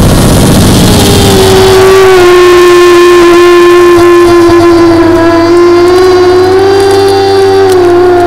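A loud, sustained droning tone with a rich stack of overtones, rising out of a rumbling noise about a second in and holding with a slow dip and rise in pitch.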